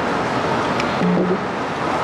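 Steady roadway traffic noise, with a brief low steady tone about a second in.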